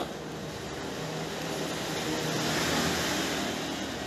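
Steady background noise with no clear pitch or strikes, swelling slightly in the middle and easing off near the end.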